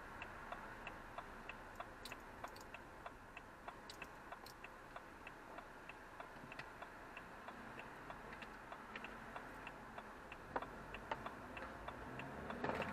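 Car turn indicator ticking steadily, about three clicks a second, heard inside the cabin over a faint engine and road hum, the road noise growing louder near the end.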